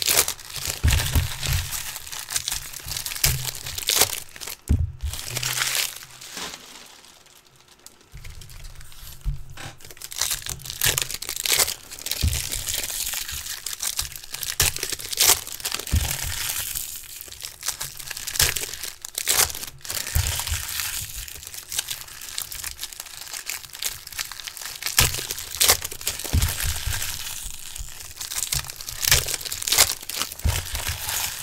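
Foil wrappers of 2017 Bowman Chrome baseball card packs being torn open and crinkled by hand, a dense run of sharp crackles and rustling. There is a brief quieter lull about seven seconds in.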